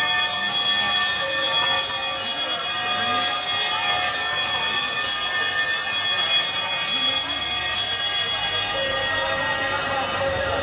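Live band playing loudly on electric guitar and drum kit, with a steady ringing wash of cymbals and sustained high guitar tones.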